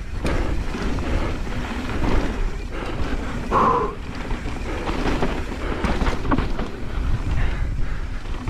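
Mountain bike descending a dirt flowtrail at speed, heard from on board: a steady rush of tyre and wind noise on the microphone with constant clattering and rattling of the bike over bumps. A short higher note sounds about three and a half seconds in.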